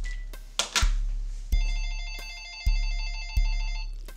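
A telephone ringing with a rapid electronic trill, from about halfway through to near the end. Under it runs a background music beat with deep bass drum hits, which are the loudest sounds.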